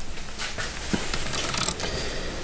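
Socket ratchet wrench tightening a bolt on a bucket seat's metal side-mount bracket, with a few faint clicks.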